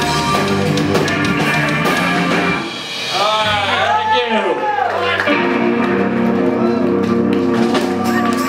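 Live rock band playing loud, with drum kit and electric guitar. A brief dip comes a little under three seconds in, followed by about two seconds of notes swooping up and down before steady chords return.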